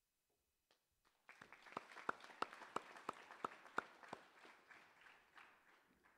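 Audience applauding, starting a little over a second in and dying away near the end, with one nearby clapper's claps standing out at about three a second.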